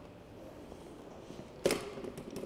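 A wrench working a bicycle's rear axle nut: quiet handling with a light tick, then a short sharp metallic clatter near the end as the wrench comes off the nut.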